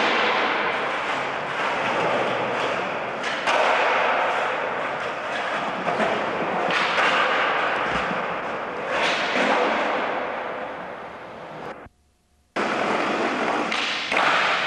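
Skateboard wheels rolling on smooth concrete, a steady rolling roar broken by a sharp knock of the board every few seconds. The sound cuts out for about half a second near the end.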